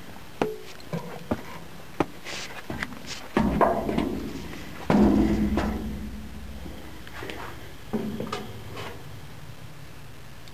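Boots climbing steel stair treads: a series of sharp clanks and taps, with two heavier, booming thuds about three and a half and five seconds in, then lighter steps on the steel deck.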